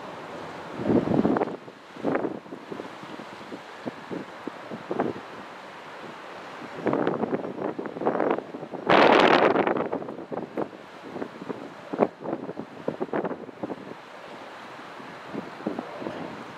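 Wind buffeting the camcorder microphone in irregular gusts, the strongest about nine seconds in, over a steady background hiss.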